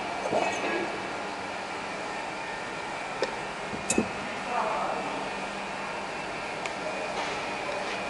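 Steady mechanical hum of workshop machinery, with a few light metal clicks from parts being handled, loudest around four seconds in.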